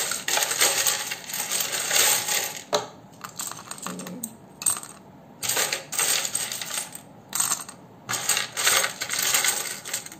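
Small letter tiles and metal charms clattering and clinking in several bursts with short pauses between, being shaken and cast onto a spread of cards.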